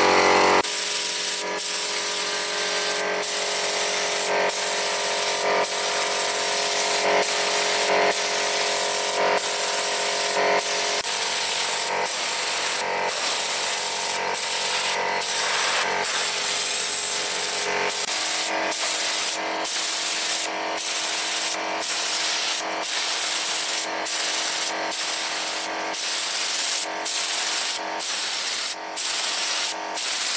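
Compressed-air paint spray gun atomising Bordeaux mixture (copper sulphate with lime): a loud steady hiss broken by short stops about every second as the trigger is let go. A steady hum from the running air compressor sits under it, fading out by around the middle.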